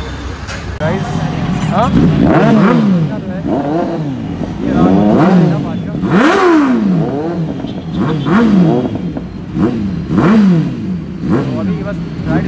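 Motorcycle engines revved again and again in quick throttle blips, each rising and falling in pitch within about a second, from about two seconds in.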